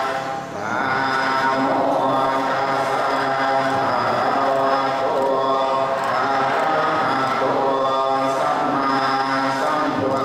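Buddhist monk chanting into a microphone over a PA: a long, drawn-out melodic chant in held tones, with a short breath pause about half a second in.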